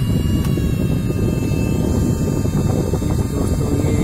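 Sunon 12 V DC cooling fan in a converted fan heater running with a steady rush of air. About half a second in, a single click as the heater's rotary switch is turned to bring in the second heating rod.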